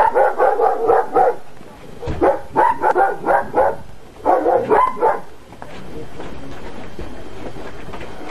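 A dog barking in three quick runs of several barks each during the first five seconds, then stopping. After that a steady noise continues.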